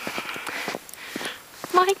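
Footsteps walking in fresh snow, a few soft steps, with a breathy sigh at the start and a woman's voice starting to speak near the end.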